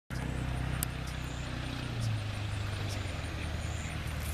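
A steady low mechanical hum, shifting slightly in pitch about two seconds in, with a few faint clicks.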